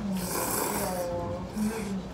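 A long slurp of thick kalguksu wheat noodles being sucked into the mouth, a hissing intake of air lasting about a second.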